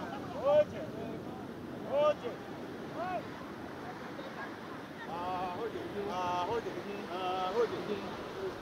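Surf washing on a beach under the voices of fishermen calling as they haul in a large net. Short shouts that rise and fall in pitch come in the first half, then three longer held, chant-like notes near the end.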